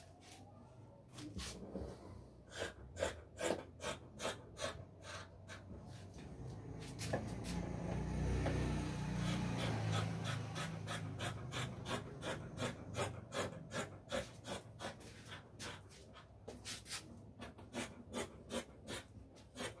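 Scissors cutting through cloth: a steady run of short snips, about three a second, with a louder low rumble in the middle.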